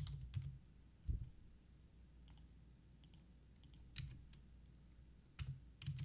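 Sparse, isolated keystrokes on a computer keyboard: a handful of separate clicks spread unevenly over several seconds, with soft low thumps under some of them.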